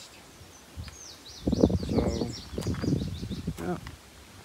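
A small songbird singing a quick run of high, falling chirps, starting about a second in and lasting a little over a second.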